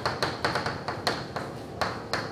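Chalk writing on a blackboard: a quick, irregular run of sharp taps as the chalk strikes and strokes across the board.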